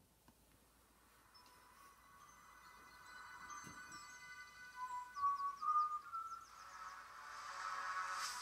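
TV advert music playing through a laptop's speakers. It fades in from quiet with held notes and a slowly rising melody, getting louder toward the end, and a run of short high chirps comes about five seconds in.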